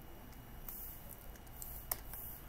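A single short click near the end, made at the computer while working the software, over faint steady room noise.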